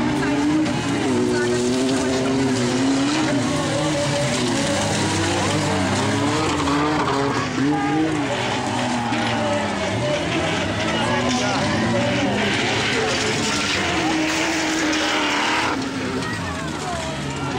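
Several stock car engines of the over-1800 cc class racing on a dirt track, revving hard with pitches that keep rising and falling as the cars accelerate and lift off for the turns.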